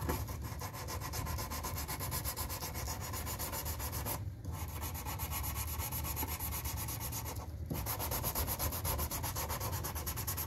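Sandpaper on a hand sanding block rubbing along the edge of a cedar board: a steady run of back-and-forth sanding strokes, broken by two short pauses, about four seconds in and about seven and a half seconds in.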